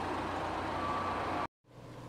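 Steady background hiss of outdoor ambience, with a faint steady high tone for about half a second past the middle. The noise cuts off suddenly near the end.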